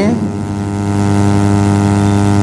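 Steady electrical hum, a low buzz with a stack of even overtones that holds one pitch without change.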